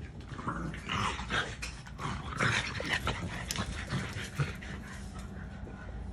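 French bulldogs making dog sounds during rough play, mixed with the scuffle and rustle of blankets and cushions being dug at, in uneven bursts that are busiest in the middle.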